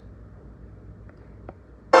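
Faint steady hum with a small click about one and a half seconds in; then orchestral accompaniment with brass comes in loudly right at the end.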